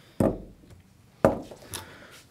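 Small spools of magnet wire being set down on a hardwood workbench: two sharp knocks about a second apart, then a fainter click.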